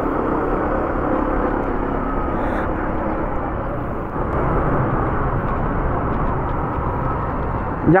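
Honda ADV 150 scooter's single-cylinder engine running at low road speed, under steady wind and road noise on the bike-mounted mic.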